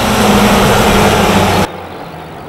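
A motor vehicle's engine idling steadily: a low hum under a haze of noise that cuts off suddenly about one and a half seconds in.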